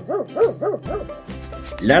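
Small dachshund yelping in a quick run of short yelps, about five or six a second, which stops about a second in; background music continues.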